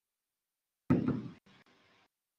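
A single dull knock about a second in, dying away within half a second, followed by fainter noise.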